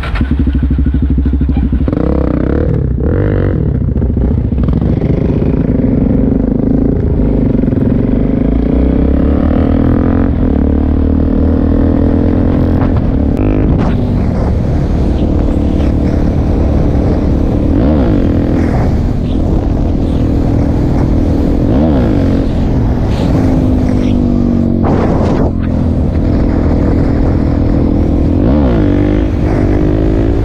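Suzuki DR-Z400 supermoto's single-cylinder four-stroke engine pulling away and riding along a road. The revs climb and drop back again and again as it shifts up through the gears.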